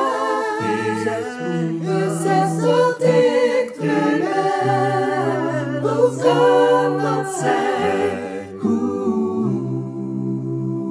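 Small a cappella vocal ensemble singing a Dutch worship song in four overlapping parts (sopranos, altos, tenors and basses), with no instruments. A sustained bass line runs under the moving upper voices.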